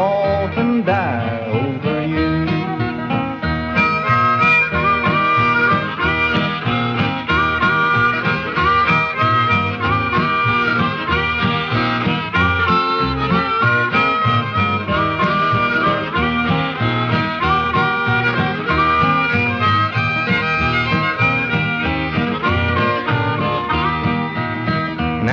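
Harmonica solo over the band's guitar backing and steady country beat: the instrumental break of a 1949 country boogie record between sung verses. The last sung note trails off about a second in, and the harmonica carries the tune from there.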